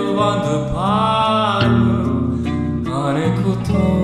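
Band music: an electric guitar, a Fender Stratocaster, plays a melody with gliding, bending notes over a steady bass line.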